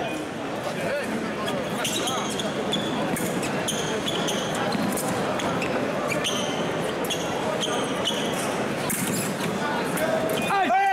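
Fencers' footwork on the piste during a foil bout: repeated stamps and thuds, with short high shoe squeaks at several points, over a steady murmur of voices in a large hall.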